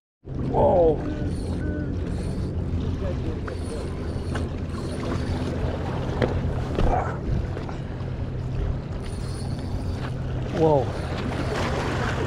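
A steady low engine hum over wind and water noise, with a few brief snatches of voice.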